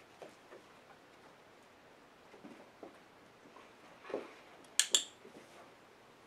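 A dog-training clicker pressed once, giving a sharp double click near the end, marking a behaviour the dog has just offered for a treat. A few faint soft sounds come before it.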